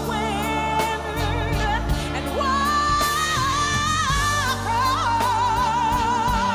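Female gospel singer singing long held notes with a wide, even vibrato over a live band's bass and drums.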